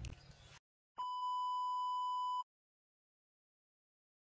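A single steady electronic beep, the test-pattern tone that goes with TV colour bars, held for about a second and a half.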